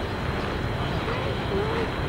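Steady traffic noise, with the faint voices of a crowd of onlookers.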